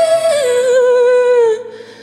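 A woman's voice holding a long sung note with vibrato. It steps down to a lower note about half a second in, sags a little lower and ends about a second and a half in, leaving a quiet tail.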